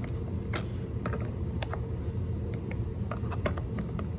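Combination wrench working the two 8 mm carburetor nuts on a Stihl 038 chainsaw, giving scattered light metal clicks and ticks at irregular intervals, over a steady low hum.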